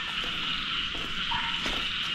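A steady outdoor chorus of frogs and insects, with a few faint knocks.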